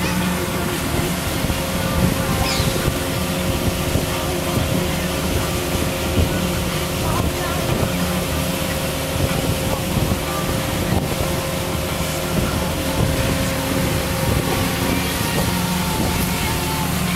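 Pontoon boat's outboard motor running steadily under way, a constant hum under the rush of wind and water.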